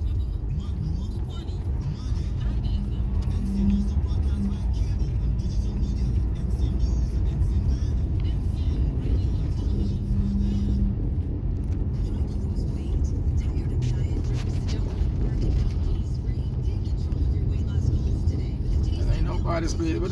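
Steady low rumble of a car's engine and tyres heard from inside the cabin while it drives slowly along a paved road.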